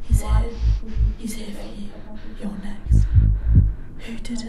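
Film sound design: deep heartbeat-like thumps in two clusters, near the start and near the end, under a steady low hum and indistinct whispering voices.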